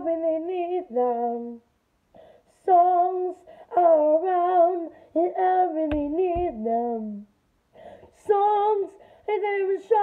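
A child singing a song unaccompanied, held notes wavering with vibrato, in phrases broken by short pauses for breath. There is a low thump about six seconds in.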